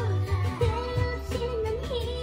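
Somber K-pop song playing: a female lead vocal sings held, wavering notes over a steady low bass line.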